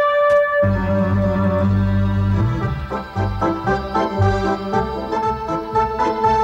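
Electric organ playing a polka. It opens on a held note, then a low bass part comes in under a second in and the chords change steadily from then on.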